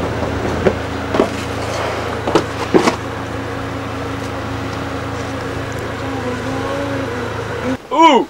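A steady low mechanical hum with a few sharp clicks and knocks in the first few seconds; the hum cuts off suddenly near the end.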